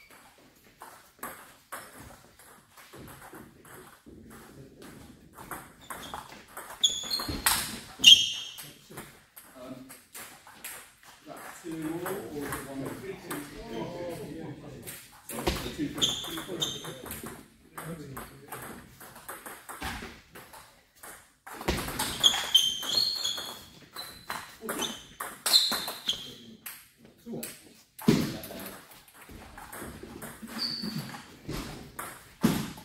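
Table tennis rally: the ball clicks sharply off paddles and table in quick runs of strokes, with short pauses between points. Short high squeaks come and go, and voices can be heard in the background.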